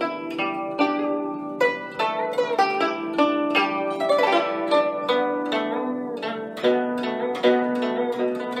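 Guzheng played solo: a steady stream of plucked notes in quick runs, several of them sliding in pitch after the pluck.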